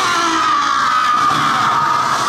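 A long, high-pitched scream that dips slightly in pitch and then holds steady, over a noisy din.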